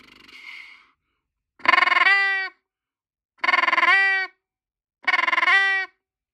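Atlantic brant call, a handheld goose call, blown three times about a second and a half apart. Each note is a short rolling, rattling 'machine gun' call that breaks downward in pitch at its end. A faint, softer rasp comes first.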